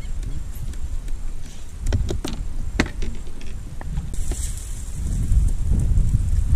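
Low rumble of wind on the microphone. A few sharp knocks come about two to three seconds in, and a short hiss follows just after four seconds.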